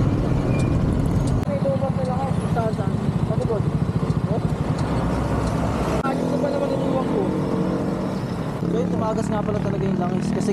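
Motor scooter engines running at a roadside stop, with people talking over them; the engine sound changes abruptly about six seconds in.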